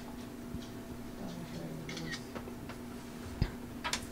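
Quiet room tone with a steady low hum, a few scattered light clicks, and a soft thump about three and a half seconds in.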